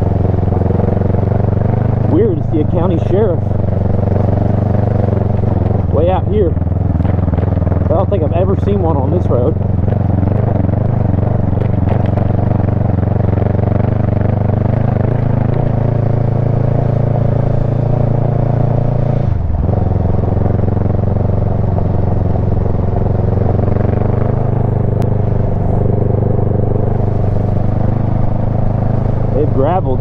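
Kawasaki Versys 650's parallel-twin engine running steadily at cruising speed on a gravel road, heard from the rider's own camera. The engine note dips and breaks briefly about two-thirds of the way through, then picks up again.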